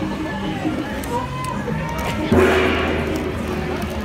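Crowd of people chattering with background music playing. A little past halfway a louder held low note or chord comes in and carries on.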